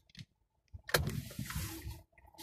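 Car noise heard inside the cabin: a rush of road and engine noise with a low rumble starts suddenly about a second in.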